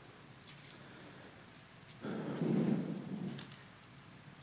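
A breath into a handheld microphone held close to the mouth, a soft noisy rush starting about two seconds in and lasting about a second and a half.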